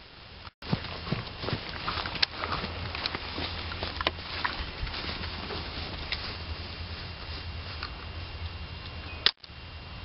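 Wind buffeting the camera microphone as a steady low rumble, with a few faint ticks. Two sharp clicks, each followed by a split-second dropout, come near the start and about nine seconds in.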